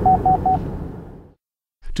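A 2015 Cadillac's lane departure warning audible alert: three short, evenly spaced beeps of one pitch through the car's right-side speakers, signalling that the car is drifting into the right lane. Low road noise in the cabin sits under the beeps and fades away a little after a second in.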